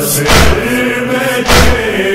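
Men's voices chanting a noha lament, with two loud percussive strikes about 1.2 s apart in a steady beat, typical of matam (rhythmic chest-beating).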